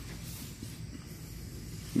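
Low, steady background hiss with a faint low hum; no distinct event.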